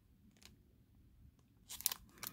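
Clear plastic stamp packaging crinkling as it is handled, a short burst of crackles near the end after a mostly quiet stretch with one faint tick.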